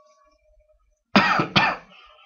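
A person coughing twice, two short loud coughs about half a second apart, a little over a second in.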